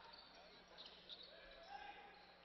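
Basketball being dribbled on a hardwood court, faint under the low murmur of the arena crowd.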